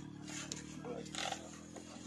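Faint scuffs and rustles as a Yamaha WR155R dirt bike is leaned over onto its side on dry grass, over a steady low hum.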